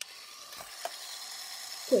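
Small Lego electric motor switched on and running free with nothing attached, a steady high whir with a couple of faint clicks. It is built in to mimic the typical sound of a Formula 1 car.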